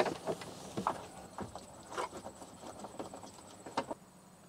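Irregular light clicks and taps of a nut driver turning a small bolt out of the plastic dash trim, about a dozen scattered ticks at uneven spacing.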